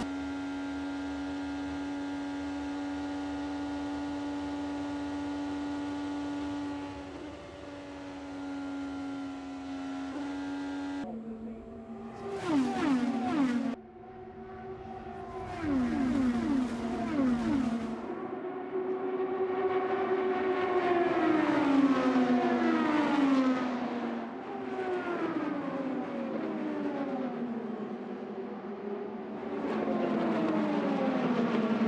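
IndyCar twin-turbo V6 race engines. For about the first eleven seconds one car's engine holds a steady pitch as heard from its onboard camera; after that, cars pass the camera one after another, each engine note sweeping down in pitch as it goes by.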